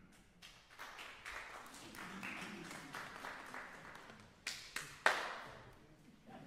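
Audience applauding, starting with scattered claps and building into steady clapping, with a few louder claps close by about four and a half to five seconds in.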